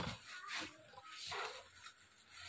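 Soft rustling of cloth and clear plastic wrapping as garments are shifted by hand, in two or three short bursts.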